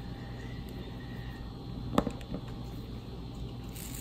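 Quiet room background with a steady low hum, broken by one sharp click about halfway through and a few fainter ticks.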